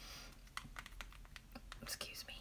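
A string of faint, light clicks and taps, about eight in two seconds.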